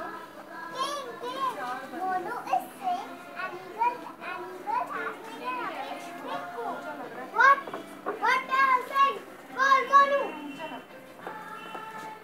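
High-pitched children's voices speaking and calling out in short, rising and falling phrases, loudest between about seven and ten seconds in.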